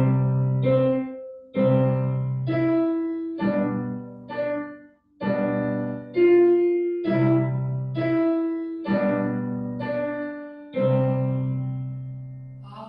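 Piano played with both hands at a slow, even tempo: a simple right-hand melody over two-note chords in the left hand, each note struck and left to ring.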